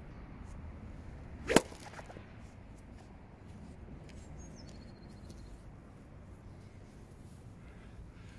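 A single sharp, clean strike of a 50-degree Callaway Jaws wedge on a golf ball hit off a practice mat, about a second and a half in.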